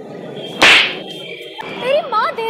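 A single sharp, loud slap across a man's cheek, a little over half a second in.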